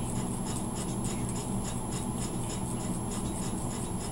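Toothpick scraping a yellow chalk pastel stick, shaving off powder in a quick run of light scraping strokes, about four a second.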